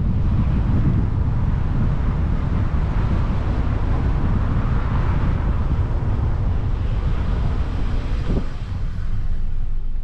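A car driving slowly along a street: steady low engine and road rumble, with wind buffeting the microphone.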